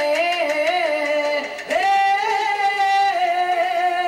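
A woman singing live into a microphone, a slow phrase with little under it. After a short breath about a second and a half in, she holds one long note with vibrato.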